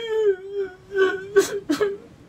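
A man whimpering in a high, drawn-out mock-crying whine that breaks into a few short sobs near the end, played for laughs over being sad.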